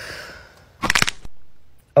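A breath let out, then about a second in a quick run of sharp cracks: the bone-cracking sound of a chiropractic back adjustment.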